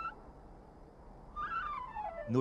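Background flute music: a held high note breaks off at the start, and after about a second and a half of quiet a new note enters and slides down in pitch.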